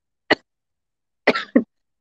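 A woman's short cough in two quick parts about a second and a half in, after a brief click.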